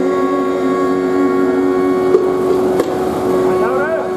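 Harmonium holding a steady sustained chord, with a voice sliding upward in pitch near the end.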